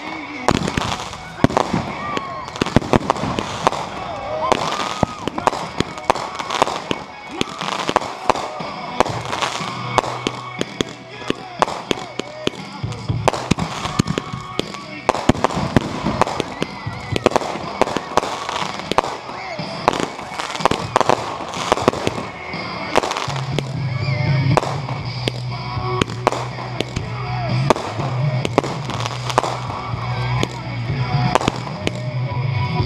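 Aerial firework shells launching and bursting in quick succession, many sharp bangs following one another throughout.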